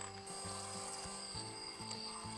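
Electric hand blender running in a saucepan, puréeing soup, with background music playing over it.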